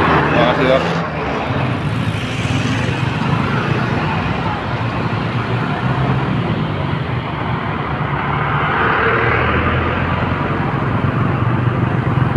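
Parade vehicles driving slowly past, engines running with a steady low hum over street noise.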